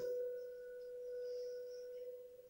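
A faint steady tone held at one pitch, with a fainter higher overtone above it, like a constant electrical whine in the room or recording.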